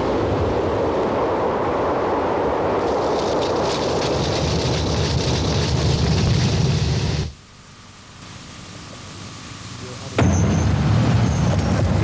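Loud, steady rushing noise that cuts off suddenly about seven seconds in. It swells back up from a low level and returns as a deeper rushing rumble near the end.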